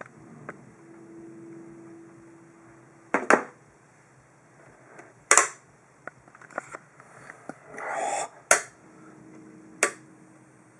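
Handling clicks of a 1:24 die-cast model car as its opening doors and hood are snapped shut by hand: a run of sharp clicks a second or two apart, the loudest about three and five seconds in and twice near the end, with a brief scrape just before the third.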